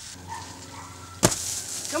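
One sudden, loud impact about a second in, followed by a brief rush of noise: a person landing after jumping out of a tree.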